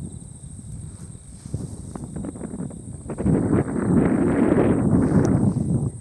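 Wind buffeting the microphone. A strong gust builds about three seconds in and lasts a couple of seconds.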